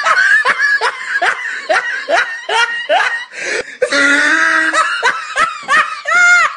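A person laughing hard, high-pitched: a quick run of short, rising gasping laughs, then a longer drawn-out high note about four seconds in, then more laughs.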